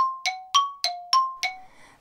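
A chime sound effect: a quick run of six bell-like dings, about three a second, alternating between a lower and a higher note, each ringing briefly before the next.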